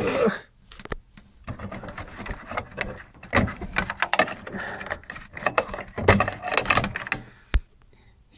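Hands handling the wiring loom and cable connectors inside an opened electronic instrument's metal chassis: irregular rustling, rattling clicks and small knocks, with a sharp single click near the end.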